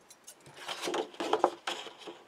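Scissors cutting into a sheet of paper along a pencil line: a few short crisp snips with paper rustling, starting about half a second in.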